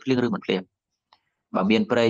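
A man speaking Khmer in a steady teaching voice. He pauses for just under a second, and one faint click falls in the pause.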